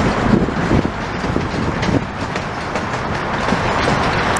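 Freight train cars rolling past, a steady rumble with irregular clattering knocks from the wheels on the track.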